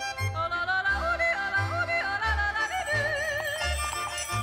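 Background music: a yodeled vocal melody, leaping suddenly between low and high notes with vibrato on the held notes, over a steady pulsing bass beat.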